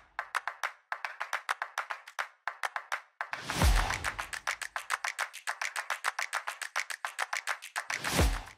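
End-screen music made of a fast, even run of sharp clicking taps, several a second, with a deep whooshing thump about three and a half seconds in and another at the very end.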